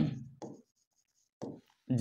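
Pen writing on an interactive whiteboard screen: faint, light scratching strokes as a word is finished, with a man's voice trailing off at the very start.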